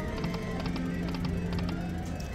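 Autumn Moon video slot machine's reel-spin sounds: a steady electronic music tone under a run of quick, even ticks as the reels spin and stop, on a spin that pays nothing.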